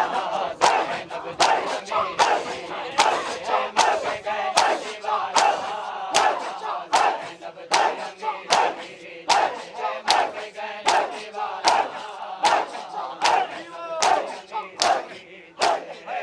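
A crowd of men performing matam, slapping their bare chests in unison at about two slaps a second, with men's voices chanting and shouting between the beats.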